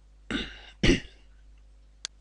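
A man coughs twice to clear his throat, the second cough louder.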